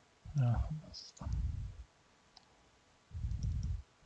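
Computer mouse clicking a few faint times, with two short, low, muffled rumbles, one about a second in and one near the end.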